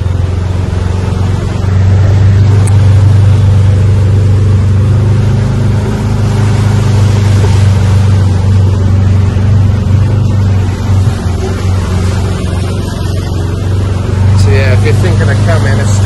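Open-sided buggy driving along: its motor running with a steady, even low hum under a constant rush of wind and road noise.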